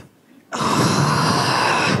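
Theatre audience reacting with a loud collective sigh, beginning about half a second in and lasting about a second and a half.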